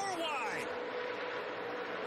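A pack of NASCAR Truck Series race trucks' V8 engines at full speed, making a steady drone. A brief voice is heard in the first moment.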